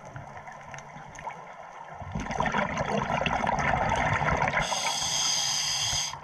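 Scuba diver's exhaled breath bubbling and gurgling out of the regulator underwater, starting about two seconds in; a higher hiss joins near the end and stops suddenly.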